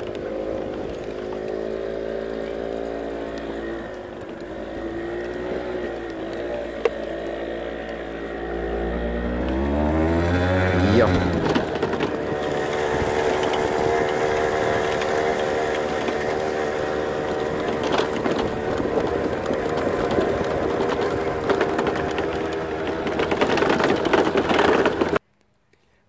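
Small vehicle engine running, speeding up about ten seconds in and then holding a higher, steady pitch; the sound cuts off just before the end.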